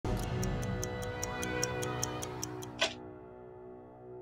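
Title music: stopwatch-style ticking, about five ticks a second, over a sustained synth chord. A whoosh comes a little before three seconds in, the ticking stops there, and the chord fades.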